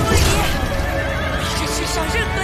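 A horse whinnies near the start, with hooves clattering, over background music.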